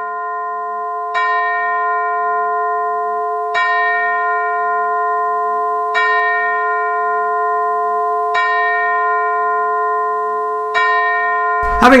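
A single bell tolled slowly and evenly, struck five times about two and a half seconds apart, always at the same pitch, each stroke ringing on into the next. A man's voice begins over it at the very end.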